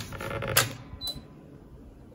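Lower door of a Midea dual-zone air fryer oven being pulled open: a sharp click about half a second in, then a second click with a brief high tone about a second in.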